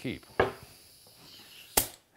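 A solid walnut board set down on a wooden workbench, giving one sharp wooden knock near the end.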